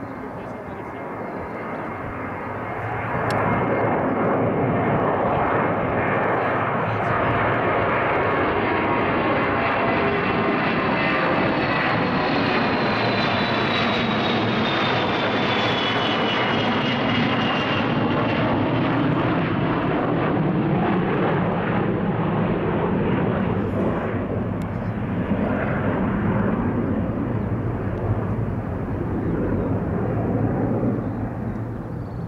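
NATO Boeing E-3 Sentry's four TF33 turbofan engines on a low pass, one of them at idle: the jet noise builds over the first few seconds, then holds loud, with a high whine that slides down in pitch in the middle as the aircraft goes by.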